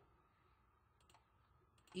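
Near silence with a few faint computer mouse clicks, a quick double click about a second in.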